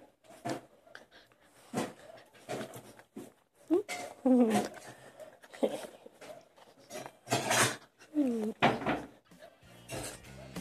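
Small dog making play sounds in short bursts as it mouths and tussles with a person's hand, including two calls that fall in pitch. Music starts near the end.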